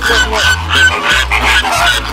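Flamingos honking with short, goose-like calls, laid over background music with a steady bass beat.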